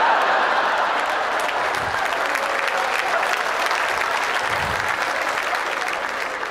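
Audience applauding steadily in response to a stand-up joke, easing slightly near the end.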